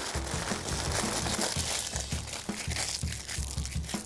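Wax paper crinkling as it is rolled around a log of softened butter and its ends are twisted shut.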